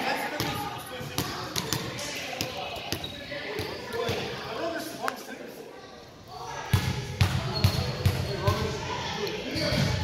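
Volleyball being played in an echoing gym: thuds of the ball being struck and bouncing on the wooden floor, sharp knocks and squeaks throughout, and indistinct voices of the players. A run of heavier low thumps starts about two-thirds of the way in.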